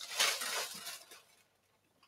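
Paper packaging rustling and crinkling for about a second as a boxed cosmetic product is pulled out.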